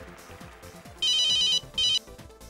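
Smartphone ringtone for an incoming call: an electronic ringing tone in two bursts, starting about a second in, the second cut short.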